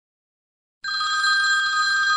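Telephone ringing: a steady, high two-pitched ring that starts suddenly about a second in, after silence.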